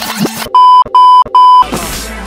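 Three loud electronic beeps at one steady pitch, evenly spaced, each about a third of a second long, starting about half a second in. The music drops out under them and resumes right after.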